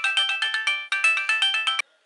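Mobile phone ringtone playing a fast melody of bright, evenly spaced notes, cutting off abruptly near the end as the call is answered.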